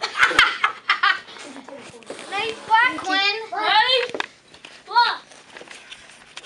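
Young children laughing and calling out excitedly, in short repeated bursts of high-pitched laughter, with a couple of sharp knocks right at the start.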